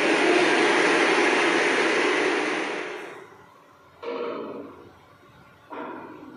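Applause from a small audience breaks out as a speech ends and dies away after about three seconds, followed by a couple of soft knocks.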